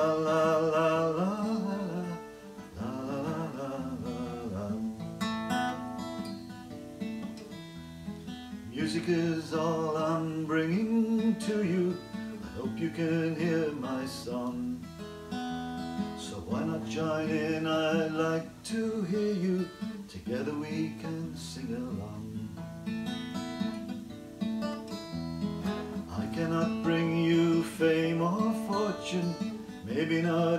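Acoustic guitar strummed as a song accompaniment, with a man's voice singing phrases over it at intervals.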